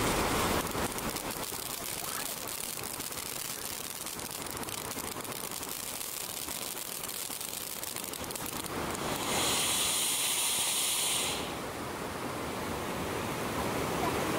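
Ground fountain fireworks hissing as they spray sparks, over a steady rush of flowing water. A louder, brighter hiss rises for about two seconds after the ninth second, then falls back to the water's rush.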